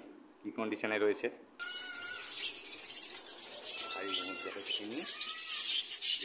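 Many cage birds in a breeding aviary calling together: a dense chatter with several clearer drawn-out calls standing out, starting abruptly about a second and a half in.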